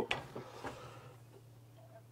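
Quiet kitchen background: a faint steady low hum with a few soft ticks in the first second, fading almost to silence.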